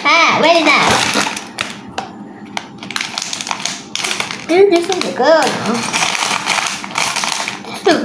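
Clear plastic bag of small toy-brick pieces crinkling and rattling as it is handled, with a child's short wordless vocal sounds at the start and again about halfway.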